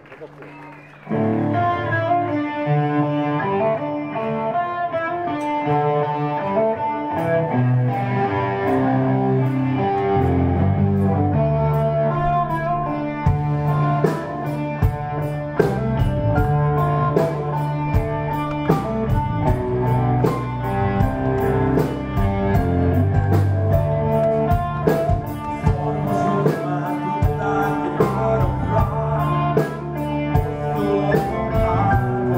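A rock band playing live with electric guitar and bass, starting about a second in. A drum kit joins partway through and settles into a steady beat.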